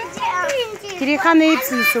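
Young children's voices, talking and calling out in high-pitched bursts.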